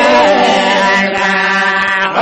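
A song: a singing voice holds long, wavering notes over a steady low accompanying note.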